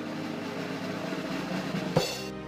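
A swelling whoosh-like sound effect that grows steadily louder and ends in a sharp hit near the end, over faint background music.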